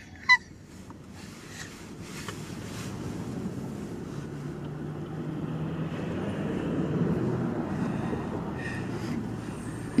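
Car engine and road noise heard from inside the cabin, growing steadily louder as the car speeds up.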